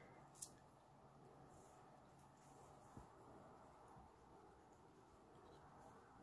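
Near silence: room tone with two faint ticks, about half a second and three seconds in, from hands bending soft copper wire around a bead.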